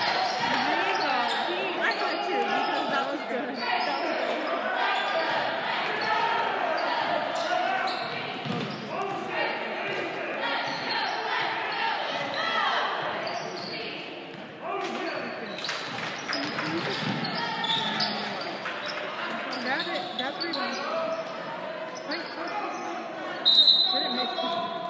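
Basketball being dribbled on a hardwood gym floor under the echoing chatter and shouts of spectators and players. A referee's whistle blows briefly near the end.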